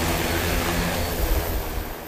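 Large multirotor agricultural spray drone hovering just above the ground: a loud, steady rotor buzz, a layered hum over a rush of air.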